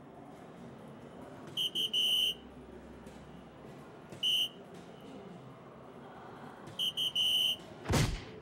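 DARTSLIVE electronic soft-tip dartboard sounding its hit tones as three darts land: a quick three-beep chime for a triple, a single beep for a single, then the three-beep chime again for a second triple. A falling whoosh of the board's award effect begins at the very end.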